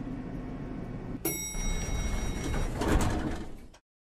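Elevator arriving: a single chime about a second in, followed by the elevator doors sliding open. The sound cuts off suddenly shortly before the end.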